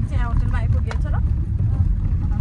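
Steady low rumble of a moving car heard from inside the cabin, with voices talking over it in the first second and a single sharp click about a second in.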